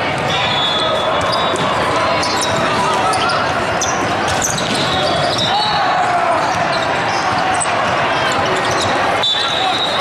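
Din of volleyball play in a large echoing hall: many voices calling and shouting, with volleyballs being struck. One sharp hit stands out about nine seconds in.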